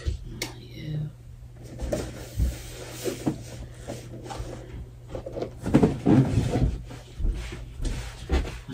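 Indistinct murmured voices with small knocks and clicks of objects being handled, over a steady low hum.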